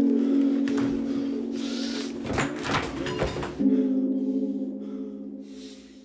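Background music: a sustained, gong-like low drone that shifts to a new note about three and a half seconds in and fades away toward the end. A few short knocks come in the middle.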